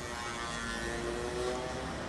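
Street traffic: a motor vehicle's engine passing close by, a steady hum that dips slightly in pitch near the end.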